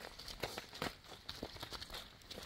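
Footsteps of several people crunching on dry leaves and loose stones on a hillside path, an irregular run of short crunches a few times a second.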